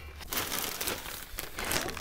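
Bags of fertilizer and compost crinkling and rustling as they are handled and set down, with a few short crackles.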